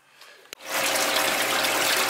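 Tap water running from a sink faucet into a plastic tub of bird breast meat being rinsed, a steady gushing splash that starts abruptly about half a second in.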